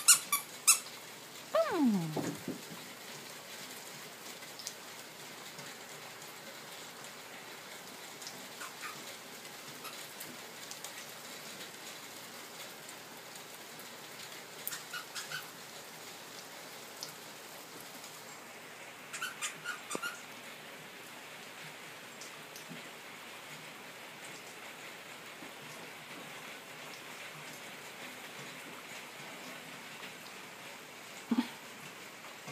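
A squeaky dog toy being chewed by toy poodles: a quick run of high squeaks at the start and a falling squeal about two seconds in, then a few short clusters of squeaks spread through the middle, the last about two-thirds of the way through. Between them only a faint steady hiss.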